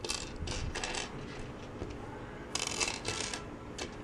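Small plastic Kre-O building bricks clicking and rattling against each other and the wooden tabletop as a hand sorts through loose pieces, in a few short bursts.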